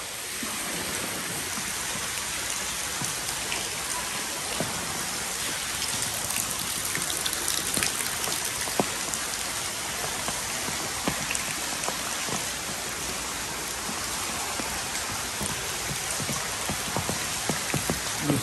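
Meltwater dripping from the ice ceiling of a glacier cave into the water below: a steady patter of many drops, with sharper single drips standing out now and then.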